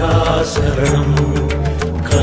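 Devotional music: a chanted vocal over sustained bass and regular percussion strokes.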